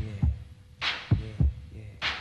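Hip hop beat: deep kick drums in pairs with a snare hit between them, and a man saying "yeah, yeah" over the beat.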